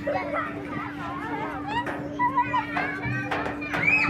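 Children's voices playing: overlapping shouts, squeals and chatter with quickly rising and falling pitch, over a steady low hum.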